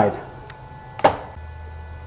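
A single short knock about a second in, then a low steady hum.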